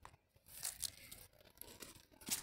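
Close scratchy rustling and scraping from a cat grabbing at a blade of grass held out by hand on a concrete ledge, starting about half a second in with a couple of sharp scratchy bursts and going on as a rough rustle.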